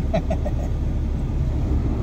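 A pickup truck's engine running, heard as a steady low rumble inside the cab, with a short laugh near the start.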